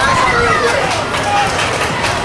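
Spectators yelling and cheering during a football play, several voices rising and falling over general crowd noise.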